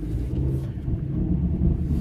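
Car engine and road noise heard from inside the cabin while driving, a steady low rumble.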